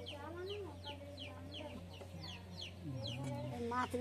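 Chickens calling: a run of short, high, falling notes, about three a second, that trails off after a couple of seconds.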